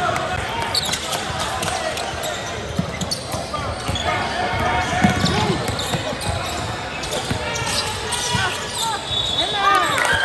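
Live basketball game sound in a gym: the ball bouncing on the hardwood court, sneakers squeaking in short repeated squeals, and spectators talking in the background.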